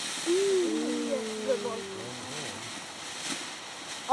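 A ground fountain firework hissing steadily as it sprays sparks. A voice calls out in a long, drawn-out tone during the first two seconds.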